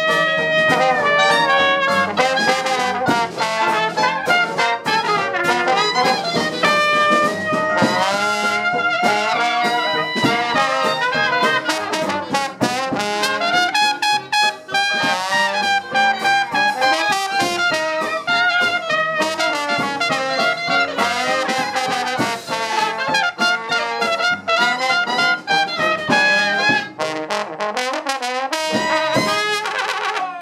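Traditional New Orleans-style jazz band, with trumpet, clarinet and trombone playing lines together over banjo, string bass and drums. The tune comes to its end near the close.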